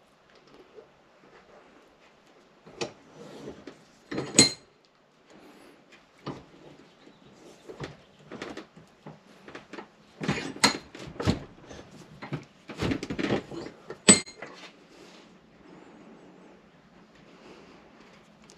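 Scattered metallic clinks and knocks of an F23 water pump and a steel bench vise being handled while an H22 water pump gear is pressed onto the pump shaft. A sharp clank comes about four seconds in, and a busier run of knocks follows between about ten and fourteen seconds as the vise is worked and the pump comes out.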